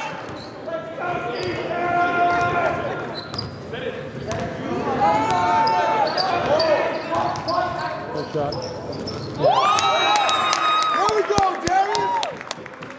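A basketball being dribbled on a gym court, a series of sharp bounces echoing in a large hall, with voices calling out over them.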